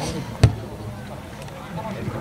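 A rugby ball place-kicked off a tee: one sharp thud of the boot striking the ball about half a second in.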